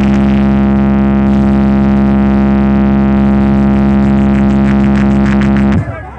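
Large DJ speaker stack playing a loud, sustained buzzing tone held at one pitch, with a quick run of beats near the end before it cuts off suddenly.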